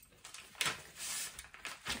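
Paper pattern sheet rustling as it is folded and creased by hand, in a few short bursts.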